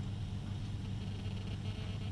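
Low steady hum with faint hiss: background room tone during a pause in speech.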